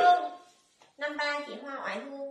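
A woman's voice speaking, broken by a short silence about half a second in.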